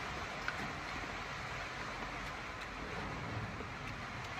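Steady low background hiss with a few faint ticks, and no clear source.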